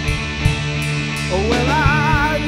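A live band playing, with electric guitars and drums. About a second and a half in, a male voice slides up into a held note with a wavering vibrato.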